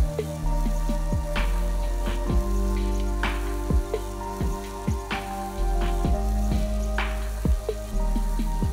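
Breaded jalapeno poppers deep-frying in hot oil, a steady sizzle, under background music with a regular beat.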